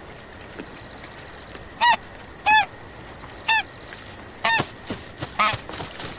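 White domestic goose honking: five loud, short honks, starting about two seconds in and coming roughly a second apart.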